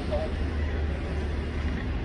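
Low, steady engine rumble of street traffic, with indistinct voices just at the start.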